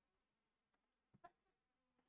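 Near silence: room tone, with two short faint clicks a little over a second in.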